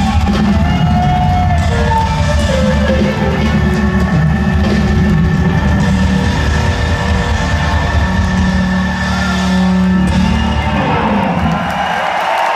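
Live rock band playing, with electric guitar over bass and drums, recorded from the audience in a large hall. The bass and drums fall away near the end as the song finishes.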